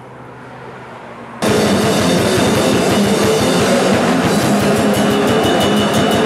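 A low background hum, then, about a second and a half in, loud heavy metal music starts abruptly: distorted electric guitar and drums playing at full volume.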